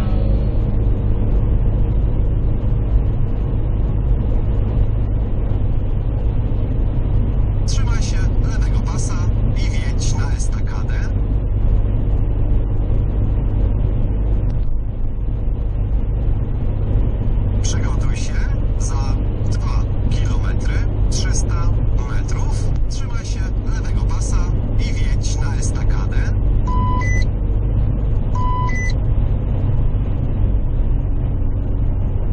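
Steady drone of a car's engine and tyres at motorway speed, heard inside the cabin. Two short beeps come near the end.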